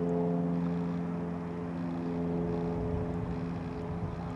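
A motor running steadily: a low, even hum.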